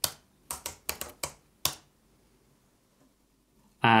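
Computer keyboard keystrokes: about seven sharp key presses in the first two seconds as a terminal command is entered.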